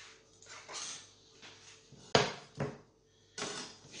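Kitchen handling noises: a sharp clatter about two seconds in and a smaller knock just after, then a brief rustle near the end, as a metal plate is set down on a wooden cutting board.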